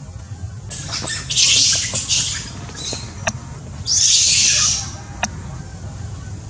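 Long-tailed macaque screaming in two harsh, loud bouts, the first starting just under a second in and the second about four seconds in. These are the distress screams of a female being bitten hard by a big male. A couple of sharp ticks fall between the bouts.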